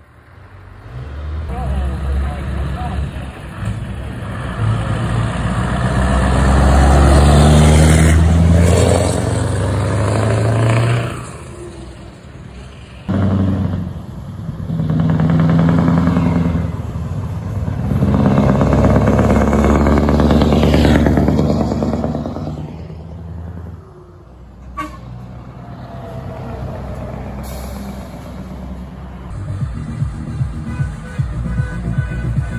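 Heavy diesel trucks driving past one after another, their engines loud and low, swelling twice as trucks go by.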